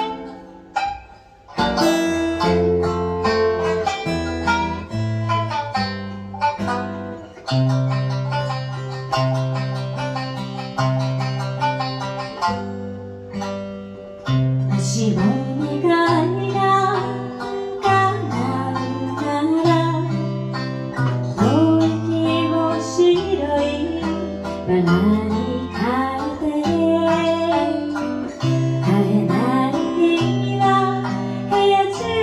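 Shamisen and acoustic guitar playing a slow song together, with plucked notes over held bass notes and a brief break about a second in. A woman's voice comes in singing about halfway through and carries the melody over the two instruments.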